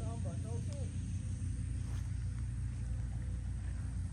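A steady low rumble, with a few faint spoken words in the first half second.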